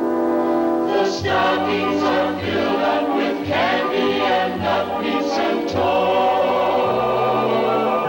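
Soundtrack music: a choir singing over an orchestral accompaniment, with a bass line coming in about a second in.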